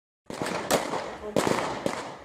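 Police handgun shots fired at a truck's cab: about half a dozen sharp cracks at irregular intervals, starting a moment in.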